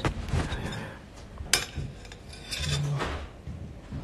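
Knife and plate clinking as a slice of cheesecake is cut and served onto a ceramic plate, with scattered clicks and one sharp clink about one and a half seconds in.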